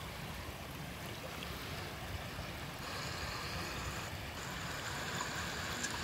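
Steady rushing of flowing water with a low rumble underneath. A brighter hiss joins about three seconds in.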